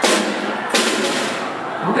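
Snare drum hit twice, about three-quarters of a second apart, each hit with a rattling decay, by a small brass tube dropped down a tall copper pipe. Brass is not magnetic, so the tube falls straight through without being slowed.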